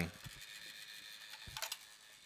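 Quiet room tone with a brief, faint clatter of small clicks about one and a half seconds in, as an object is handled at the workbench.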